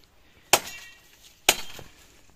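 Two sharp chopping blows into firewood about a second apart, the first with a short ringing tail.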